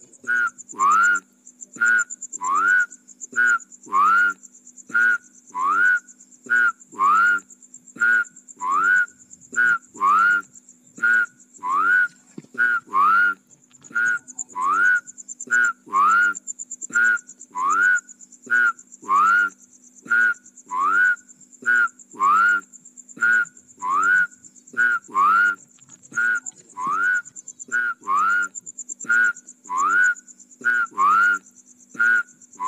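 A frog calling over and over, about one call a second, each a short rising whistle-like note, with a steady high-pitched buzz behind it.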